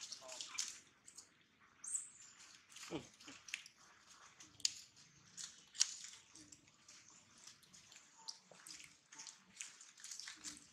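Dry leaf litter crackling and rustling under macaques moving and foraging among fallen fruit, heard as a string of sharp little clicks. A brief high squeak comes about two seconds in and a soft thump about a second later.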